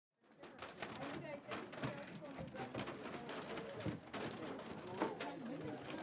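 Several people talking over one another in a hall, with sharp knocks and clatter of canned goods and paper bags being handled, the loudest near two seconds and five seconds in.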